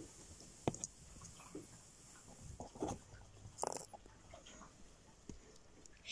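Faint scattered taps and light clicks of a small plastic toy figurine being handled and set down on miniature wooden furniture.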